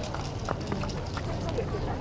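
Footsteps of a group of people running across asphalt, with scattered sharp clicks and voices in the background.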